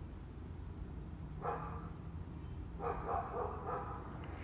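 Short animal calls in the background: one brief call about one and a half seconds in, then a run of several calls about three seconds in, over a low steady room hum.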